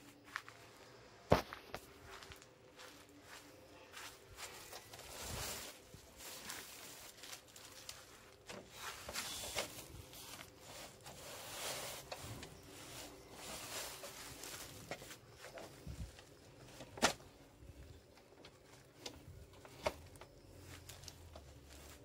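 Handling of a folding aluminium picnic table's metal frame: scattered clicks and knocks from its legs and braces, with shuffling noises between them. The sharpest knock comes about a second in.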